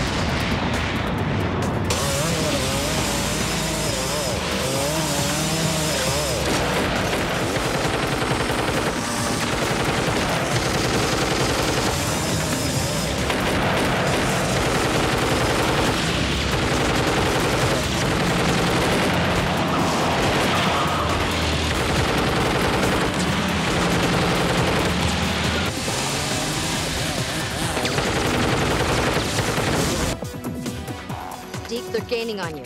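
Action-film sound mix: explosions as it opens, then repeated gunfire bursts over a motorcycle engine and a music score.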